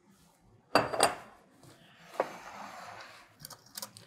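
Glass and utensils knocking against a glass mixing bowl while pumpkin pie filling is mixed: a sharp clink about a second in, a lighter tap, then a utensil scraping and stirring against the glass, ending in a few small clicks.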